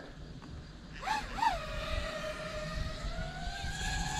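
FPV freestyle quadcopter's brushless motors whining as the drone takes off. About a second in, the pitch jumps up twice in quick succession as the throttle is punched, then the whine holds steady, rising slowly in pitch as the drone flies.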